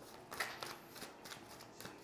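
A deck of tarot cards shuffled by hand: faint, irregular flicking and rustling of the cards against each other.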